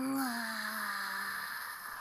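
A cartoon character's long, drawn-out moaning voice from the anime's soundtrack, one held note that dips slightly in pitch at the start and then stays level.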